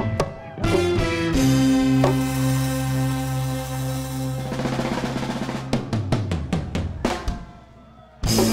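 Live reggae band playing: a held chord over a steady bass note for a few seconds, then a drum fill on the kit in the second half, dropping away quietly near the end.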